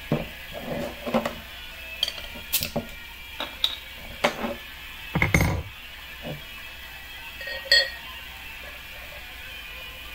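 Glass beer bottle and pint glass handled on a tabletop: scattered light clinks and taps, with one louder knock about five seconds in.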